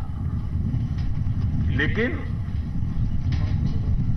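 A steady low rumble from an outdoor microphone feed fills a pause in a man's speech, without any distinct mechanical rhythm. He says a single word about two seconds in.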